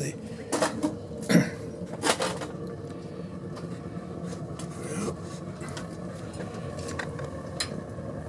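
Steady low hum and rush of a home-built wood-pellet rocket stove boiler burning, with several sharp metallic clinks in the first two seconds and a few fainter ticks later.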